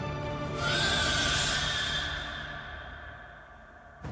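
Orchestral film score swelling about half a second in, with a high, rising screech from a baby dragon, then fading out toward the end.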